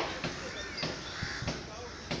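Harsh, repeated bird calls, heard as a string of short sharp sounds about every half second.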